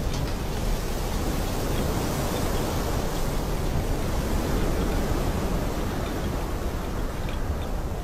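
Steady rushing wind, an even noise that holds at one level.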